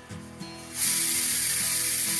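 Pressure cooker whistle: steam suddenly venting from the weight valve as a loud, steady hiss that starts a little under a second in and keeps going.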